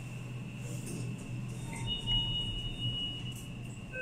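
Interior of an OTIS lift car standing at a floor: a steady low hum with a faint, steady high-pitched electronic tone over it, and a second, slightly higher tone about halfway through.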